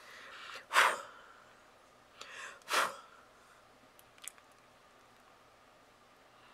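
A person's breath: two short, forceful breaths about two seconds apart, each led in by a softer intake, then a faint click.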